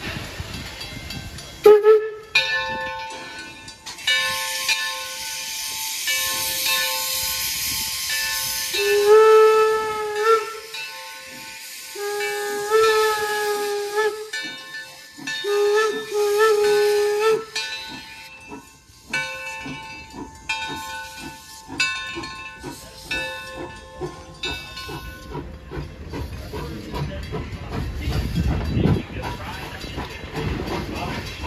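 Steam locomotive 'Torch Lake' sounding a chime whistle in a series of blasts of several notes at once, with a loud hiss of escaping steam from the cylinders a few seconds in. Near the end the whistling stops and a low rumble builds as the engine gets under way.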